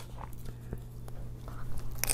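Crusty bagel sandwich with lox and cream cheese being picked up and handled, with faint crackles from the crust. Near the end, a bite into it starts with a crunch. A steady low hum runs underneath.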